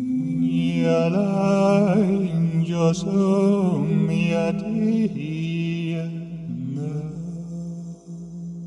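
Wordless intuitive chanting by a man's voice, layered over live-looped sustained vocal drones. A melodic line enters about a second in and bends slowly up and down above the held drone notes.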